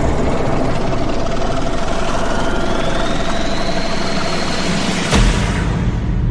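Cinematic transition sound effect: a dense, loud, low-heavy swell with a whistling tone that glides upward, ending in a sharp heavy hit about five seconds in.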